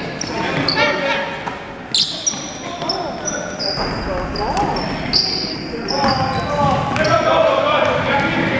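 Basketball sneakers squeaking over and over on a hardwood gym floor, short high squeals one after another, with a basketball thudding, a sharp knock about two seconds in, in an echoing gymnasium.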